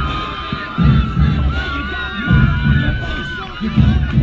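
Crowd cheering and shouting, with a low thud repeating about every second and a half underneath.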